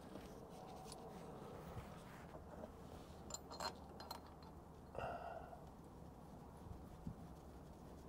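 Faint metallic clicks and clinks of hands working steel parts at the timing gear end of a Volvo D13 diesel engine, a few light ticks a little after the middle and a brief louder knock about five seconds in, over low room tone.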